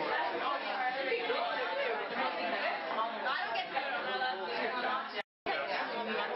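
Crowd chatter: many people talking at once in a large room, cut off by a brief gap of silence a little after five seconds in.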